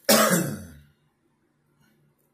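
A man clearing his throat once, a loud burst at the start that dies away within a second.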